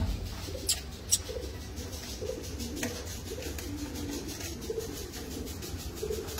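Fancy pigeons cooing, short low calls repeating every second or so. A couple of sharp clicks sound about a second in.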